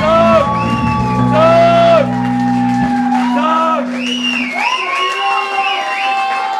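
Audience whooping and cheering at the end of a live band set, with short high shouts rising and falling. Under it, the band's last low chord rings on and stops about four and a half seconds in.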